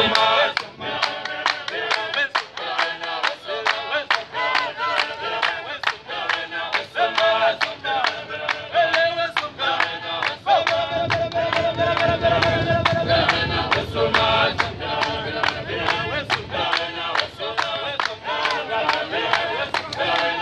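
A group of voices singing a chanted song over sharp, rhythmic claps, about three a second. About halfway through, one long note is held for a few seconds.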